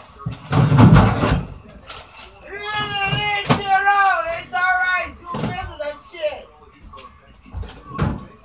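A dull thump about half a second in, then a high voice calling out in drawn-out, wavering tones, cut by a sharp knock midway and another knock shortly after.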